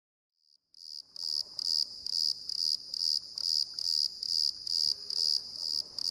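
A cricket chirping in a steady, even rhythm of high chirps, about three a second, beginning about a second in.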